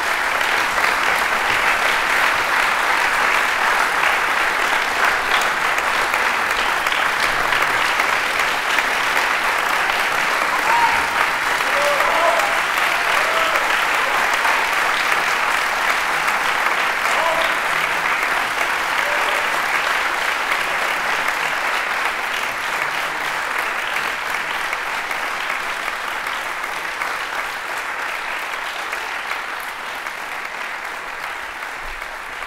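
Audience applauding, loud and steady, tapering off gradually over the last several seconds.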